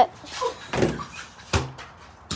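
A short rustle, then a single sharp knock or thump about one and a half seconds in.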